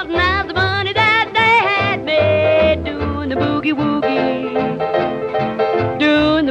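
Instrumental break of a late-1940s country boogie record: a small band with a lead line that wavers in pitch for the first couple of seconds, then settles into steadier held notes over a pulsing bass.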